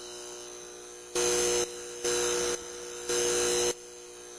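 Electrical buzz of a neon sign: a steady hum, with three louder buzzing surges about a second apart as the sign flickers.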